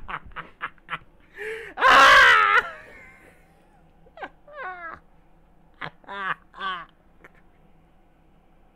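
A man laughing hard: a run of quick laugh pulses trailing off, then a loud shriek of laughter about two seconds in, followed by several short, squeaky, high laughs that bend upward in pitch.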